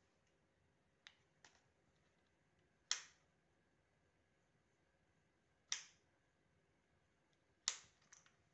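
Sharp, isolated clicks from a Laotie L8S Pro electric scooter, the defect being shown on a newly bought machine. Two faint clicks come first, then three loud snaps spaced about two and a half to three seconds apart.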